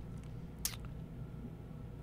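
Quiet room tone with a low steady hum, broken by one faint short click about two-thirds of a second in.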